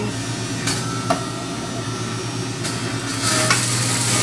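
Electric juicer running with a steady motor hum while shredding pineapple chunks pushed down its feed tube, with a couple of short knocks early on; the grinding gets louder about three seconds in.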